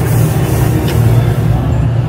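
Loud, steady low rumbling drone with a hiss over it, the ambient sound effects of a haunted-house attraction; the hiss thins out near the end.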